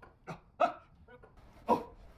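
A man's short, strained grunts of effort while lifting, about four in quick succession, the loudest two about half a second in and near the end.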